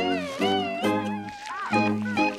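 Cartoon baby worms giving a run of short, wavering high-pitched cries, about four or five in two seconds, over background music.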